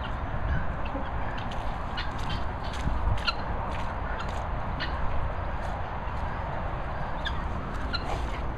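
A few short bird calls, about three seconds in and again near the end, over steady outdoor background noise with scattered light clicks.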